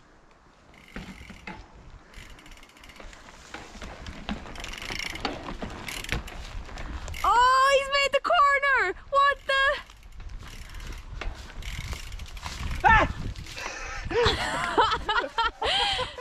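A mountain bike coasting closer, its freewheel hub ticking and its tyres rolling and knocking over grass and onto a log skinny. A high voice calls out in drawn-out exclamations around the middle.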